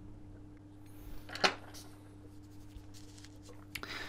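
Faint handling sounds from hands and metal tweezers at a work table: a few soft clicks and rustles, with one sharper click about one and a half seconds in. A steady low hum sits underneath.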